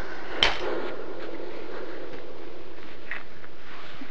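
Handling noise: a single sharp knock about half a second in, then a brief rustle and a couple of light clicks near the end, over a steady hiss.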